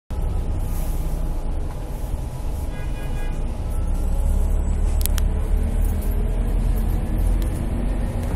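Steady low rumble of a moving bus heard from inside the cabin, with a brief high electronic tone about three seconds in and two sharp clicks about five seconds in.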